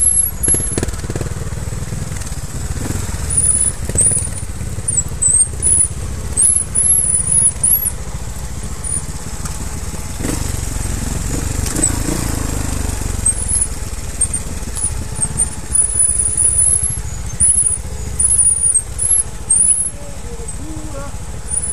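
Trials motorcycle riding down a rough, rocky trail, its engine running low and picking up in uneven bursts over a heavy rumble of the ride on a helmet-mounted camera. Thin, high squeals come and go throughout.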